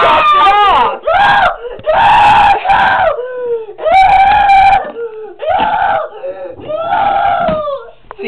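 A young boy screaming and wailing in panic, about six long, high-pitched cries with short breaths between them, frightened that his ear has been cut off.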